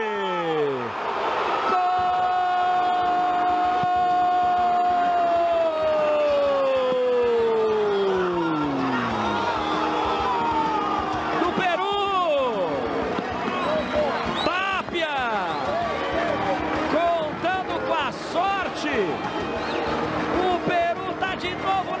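A football commentator's long drawn-out goal shout, one held note lasting several seconds that falls away in pitch at its end. Fast, excited commentary follows.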